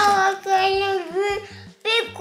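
A young child's high-pitched voice in a drawn-out, sing-song vocalising without clear words, one long wavering call, then a brief second sound near the end.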